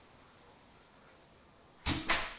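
Quiet room tone, then near the end a sudden loud, close-by knock or rustle, like something being handled or set down on the table.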